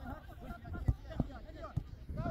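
Players' voices calling and shouting across a football pitch, with two sharp knocks a little after a second in, typical of a ball being kicked.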